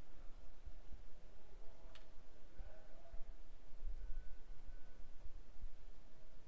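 Quiet room tone picked up by the microphone, with a low rumble and one faint click about two seconds in.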